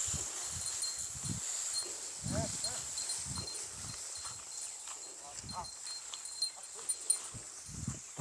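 A small herd of cattle being driven on foot across dry rice stubble: soft, irregular footfalls, with a couple of faint short calls about two and a half and five and a half seconds in. A steady high insect trill runs underneath.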